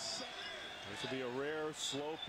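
Quiet basketball TV broadcast audio: a basketball bouncing on a hardwood court, with a commentator's voice speaking about halfway through.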